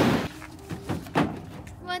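Two short dull knocks about a third of a second apart, a heavy object being handled, with a voice starting near the end.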